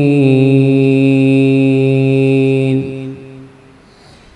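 Male Qur'an reciter (qari) holding one long melodic note at the drawn-out close of a verse, steady in pitch. The voice breaks off nearly three seconds in and its echo through the sound system dies away over about half a second.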